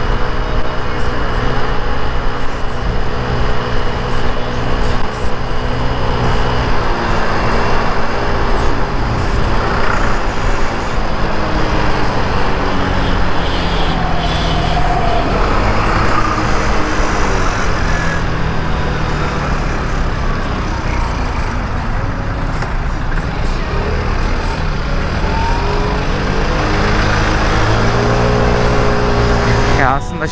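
Mondial Wing 50cc scooter engine running while riding in city traffic, its pitch dropping as the scooter slows a few seconds in and climbing again as it speeds up later, over steady wind and road noise.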